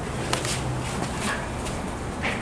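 Footsteps on a concrete floor, a couple of short clicks, over a steady low hum.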